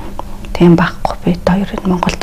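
Speech only: a person talking in an interview.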